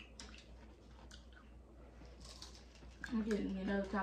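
A few faint crunchy clicks of hard taco shells being chewed; a voice starts talking near the end.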